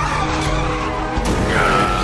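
Tires of a food truck squealing in a long steady screech that starts about one and a half seconds in, over background music.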